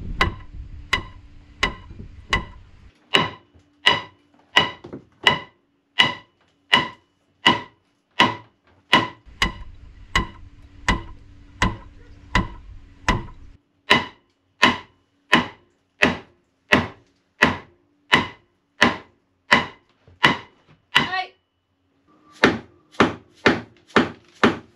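Hammer driving nails into a new frame in a wooden boat's hull: a steady run of blows, about three every two seconds, each ringing briefly. The blows pause near the end, then a few more follow.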